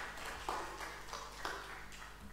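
Light, scattered applause from a small audience: a few separate handclaps, roughly two a second, over a steady low hum.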